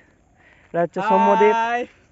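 A short vocal sound, then a loud, drawn-out, wavering bleat-like call lasting nearly a second.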